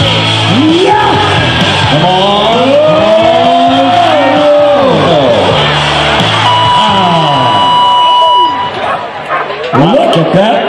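Loud music over an arena's loudspeakers, with a voice in long, rising and falling calls. A steady high tone sounds for about two seconds past the middle.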